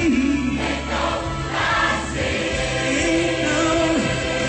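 Church choir singing a gospel song with musical accompaniment, voices holding long sustained notes over a steady bass.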